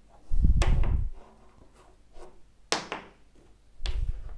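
Wooden blocks knocking and scraping against each other and a wooden tabletop as a block is pushed under a stacked wooden staircase to prop it up. There is a heavy, deep knock with a short rumble about a third of a second in, then two sharper clacks near the end.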